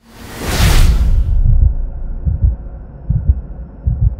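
Logo sting sound effect: a loud whoosh that swells and fades over the first second and a half, over deep low thumps that go on irregularly.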